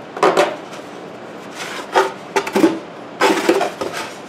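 Hand-work noises: a small metal bolt clinking as it is fitted through a hole in foam board, with the board being handled and knocked, in a series of short clicks and rustles.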